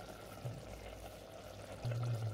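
Tomato ragu simmering faintly in an Instant Pot's steel inner pot on sauté mode. A low steady hum comes in near the end.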